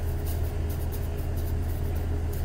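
Steady low machine hum: the constant background drone of a commercial kitchen's equipment, with no change in pitch or level.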